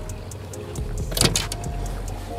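Outboard boat motor running steadily at trolling speed, a low hum, with a short, sharp noisy burst a little over a second in.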